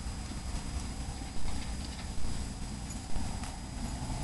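Three sharp knocks, a little under a second apart, over a steady low rumble.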